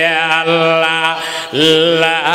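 A man's voice intoning a chant in a long held, wavering note. About a second and a half in it breaks briefly, and a new note starts, rising in pitch.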